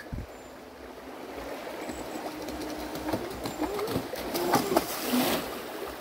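Thrasher RC jetboat approaching up a shallow, rippling creek: its motor and jet drive grow steadily louder over the running water, with a burst of spray hiss just before it comes close.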